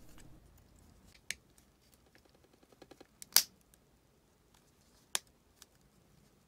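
Plastic halves of a Nissan key fob shell clicking as they are pressed and snapped together: several sharp clicks, the loudest about three and a half seconds in and another just after five seconds.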